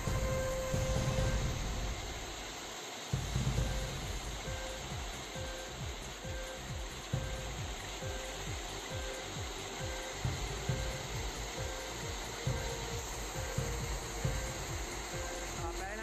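Heavy rain pouring onto a corrugated metal canopy roof and a waterlogged yard: a steady rush with irregular drumming. A faint tone repeats in short, evenly spaced pulses underneath.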